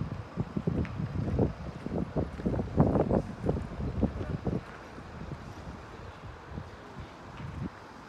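Wind buffeting the microphone in irregular gusts, loudest in the first half, then easing to a lighter rumble.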